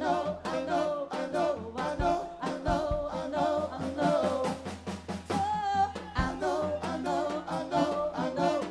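Jazz-funk band music with singing over a drum-kit beat.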